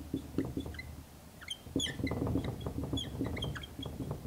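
Dry-erase marker writing on a whiteboard: light taps and scratches of the strokes, then a quick run of short, high squeaks from about a second and a half in.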